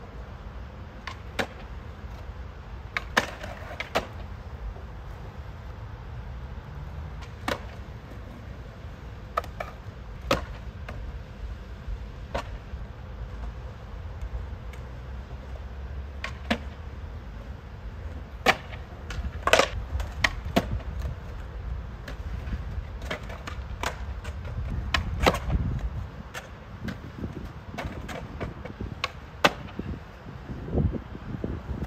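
Skateboard rolling on skatepark concrete, its wheels giving a steady low rumble, broken by many sharp clacks of the board striking the ground, with a run of them in the second half. The rumble swells and then drops away a few seconds before the end.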